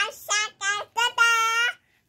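A young child singing in a high voice: four short quick notes, then one long held note that stops shortly before the end.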